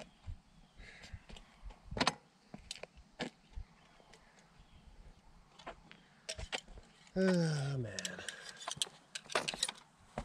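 Faint, scattered clicks and scuffs of a man moving about on a gravel road beside a parked quad, with one sharper knock about two seconds in. Near the end a man lets out a long, falling groan of "oh, man".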